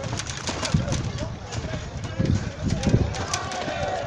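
Footsteps on a brick-paved street, short clicks and thuds in quick succession, with indistinct voices in the background.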